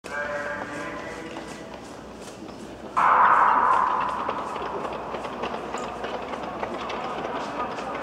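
Start of a speed skating race in an echoing indoor oval: a voice calls for the first three seconds, then a sudden loud burst about three seconds in, and spectators shout encouragement as the skaters set off.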